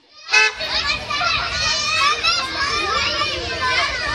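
Several children's voices chattering and shouting at once, high-pitched and overlapping. They come in suddenly just after the start, following a brief dropout.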